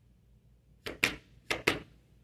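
Two pairs of sharp clicks, each pair a quick double tap, about half a second apart and starting about a second in.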